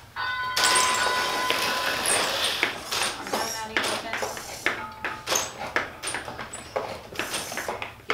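A competition robot's motors whirring as it drives and launches foam rings, with many sharp knocks as the rings and the robot's mechanisms hit the field.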